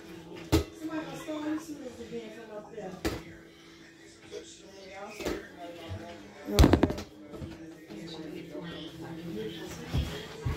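Sharp thuds of a small rubber ball being thrown and caught or bouncing: single hits about half a second in, at about three seconds and at about five seconds, and a louder cluster of hits about two-thirds of the way through.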